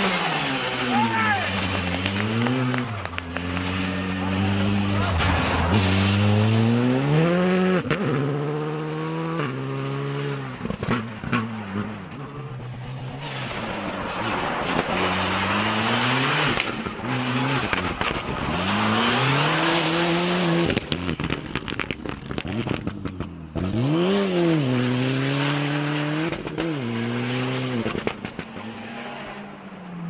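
Rally cars on a snowy special stage, one after another, engines revving hard with the pitch repeatedly climbing and dropping through gear changes and lifts, along with bursts of hissing noise from tyres and thrown snow.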